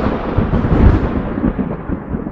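A loud, deep rumble like thunder, dying away and growing duller over the two seconds.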